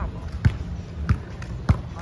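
A basketball being dribbled on pavement: three bounces at an even walking pace, a little over half a second apart.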